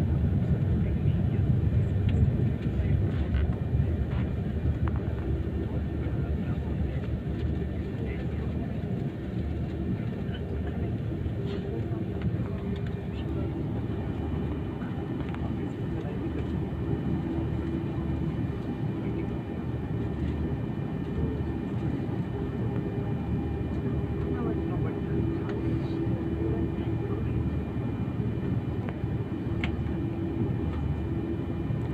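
Steady cabin rumble of a jet airliner taxiing, its engines running at low power. The rumble is a little louder in the first few seconds, and a steady hum comes in about halfway through.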